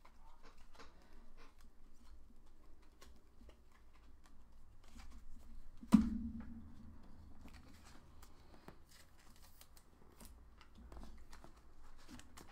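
Trading cards and pack wrappers being handled on a table: small clicks and rustles throughout, with one sharp knock on the table about six seconds in that rings briefly.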